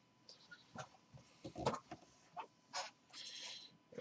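Faint, scattered taps and light rustles of hand movement, with a short soft hiss near the end; otherwise quiet.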